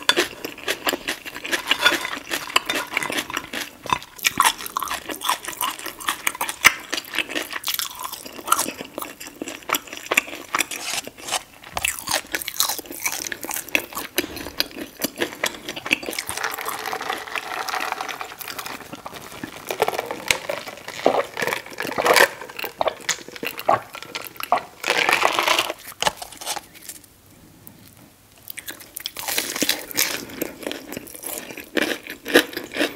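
Close-up mouth sounds of someone chewing crispy fried chicken tenders and fries, with dense crunching throughout. The crunching eases off briefly near the end, then picks up again with a fresh bite.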